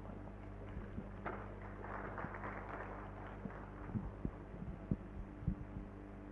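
Steady electrical hum from the hall's sound system, with a faint patch of noise about a second in and several soft, low thumps in the last two seconds.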